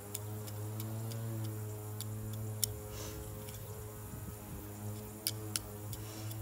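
Hand trowel digging into damp garden soil: scattered sharp clicks and scrapes as the blade strikes grit, a few near the start, several around the middle and two near the end, over a steady low hum.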